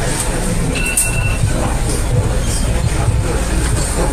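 A steady low rumble over a loud, even background noise, with a brief thin high whine about a second in.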